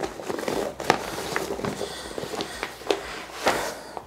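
Crinkly Dyneema laminate of a backpack being handled and spread open by hand, rustling and crackling with many small irregular clicks and a louder rustle near the end.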